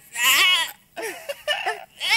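A loud, high, wavering bleat-like cry, then a few short broken cries after a brief gap.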